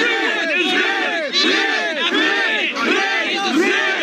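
A crowd of men shouting loudly all at once, many voices overlapping without a break.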